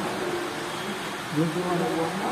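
Indistinct talking by people in the hall, over a steady background hum.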